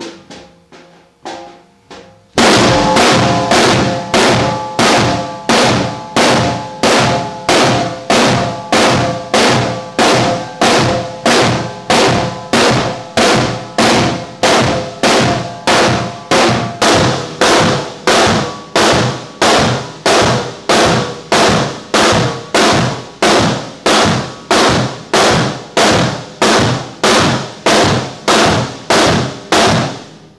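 Two drum kits played together in a slow, steady, even pulse of full hits, about three every two seconds, each ringing out before the next. A few lighter hits come first, and the heavy pulse begins about two seconds in.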